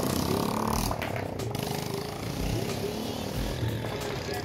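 Busy street noise: the voices of a crowd mixed with motor traffic. A few short knocks come about a second in.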